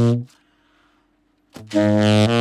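Tenor saxophone on an Otto Link Florida 8 metal mouthpiece, before corrective refacing of its concave table. A held low note cuts off about a quarter second in. After a pause of over a second, another low note is attacked and held near the end.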